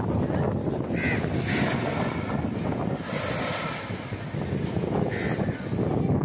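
Ocean surf washing onto a sandy shore, with wind buffeting the microphone.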